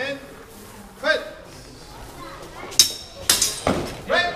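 Swords clashing as two fencers engage: one sharp, ringing clash near the end, then a quick flurry of several more blade strikes.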